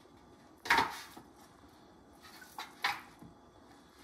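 Metal tongs and a rack of cooked spare ribs knocking against the Instant Pot's stainless inner pot and a metal baking sheet. There is one sharp clank just under a second in, then a few lighter taps and a second clank near the three-second mark.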